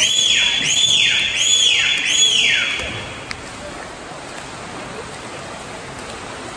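A shrill whistle sounds four times in quick falling swoops about 0.7 s apart, then stops. Under it runs the steady wash of swimmers splashing in an echoing pool hall.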